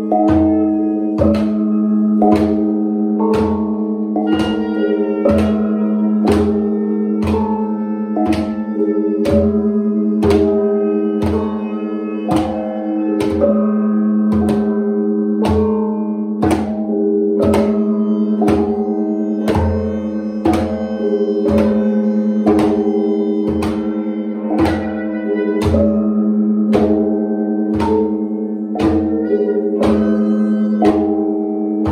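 Improvised percussion: gongs struck with padded mallets in a steady pulse of about three strikes every two seconds, with hand-drum thumps underneath and the gong tones ringing on between strikes.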